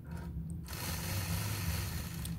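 Quilting machine with a ruler foot stitching along a quilting ruler: the motor and needle start up about two-thirds of a second in and then run steadily.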